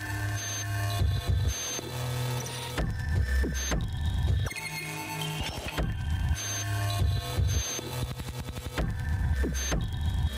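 Recorded electronic dance music with a heavy bass line and bass notes that drop in pitch twice, with busy high-pitched accents over it.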